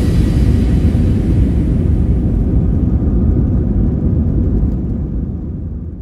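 Airliner cabin noise during the landing rollout, with the ground spoilers raised: a loud, steady low rumble from the engines and the wheels on the runway, easing off near the end.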